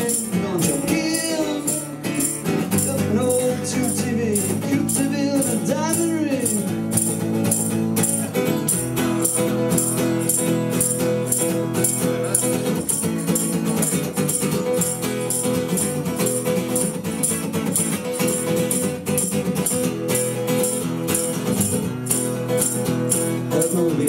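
Steel-string acoustic guitar strummed in a quick, steady rhythm through an instrumental break between sung verses, each strum giving a bright, rattling top.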